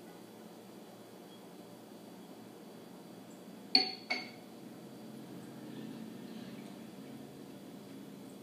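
A whiskey tasting glass set down on a counter: two short clinks of glass about a third of a second apart, a little before halfway through, over quiet room tone.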